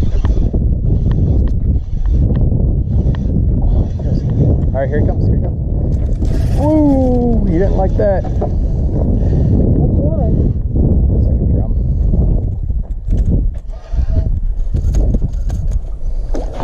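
Steady low rumble of wind buffeting the microphone over open water, with a few short wordless vocal exclamations, the longest a falling cry about seven seconds in.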